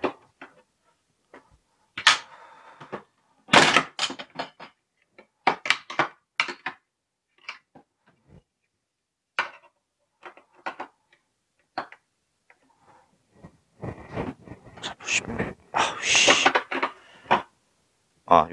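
Hard plastic of a Meiho VS-7055N tackle box and a rod-holder mounting plate knocking and clicking as they are handled and fitted together. Irregular short taps throughout, coming thicker and louder in the last few seconds.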